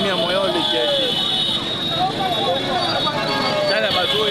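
Several people's voices shouting and calling over one another amid motorcycle traffic. A steady high tone sounds under them until about three seconds in.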